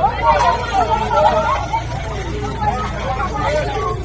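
Crowd babble: many voices talking and calling out over one another as a crowd moves off on foot, over a steady low rumble.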